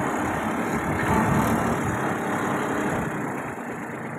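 Kubota 21 hp mini tractor's diesel engine running steadily as the tractor drives between sugarcane rows.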